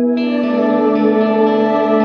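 Electric guitar played through a Catalinbread Cloak reverb pedal: a sustained chord rings on in a wash of reverb, and a brighter layer of high overtones comes in just after the start.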